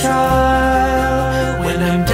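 Christian worship song: choir voices hold long notes over a steady instrumental accompaniment.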